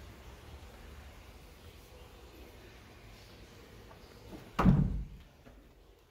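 A single heavy thump about four and a half seconds in, over low rumbling handling noise.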